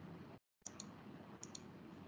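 Faint pairs of sharp clicks, twice, over low background hiss from an open video-call microphone. The hiss cuts out completely for a moment about half a second in.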